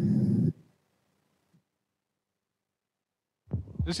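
A voice trailing off about half a second in, then about three seconds of dead silence, and another voice starting near the end.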